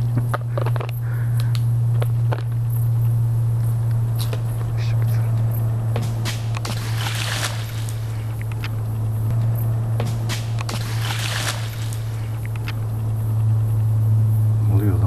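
Footsteps crunching and brushing through leafy forest undergrowth: scattered snaps and crackles, with two longer rustles of leaves about halfway through and near the end. A steady low hum runs underneath.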